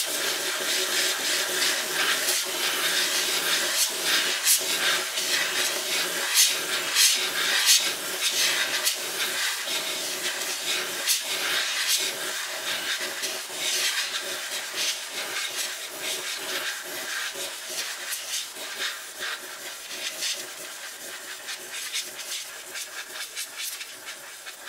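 Can of air duster spraying continuously: a long hiss broken by irregular spits and sputters. It weakens over the last several seconds as the can runs out.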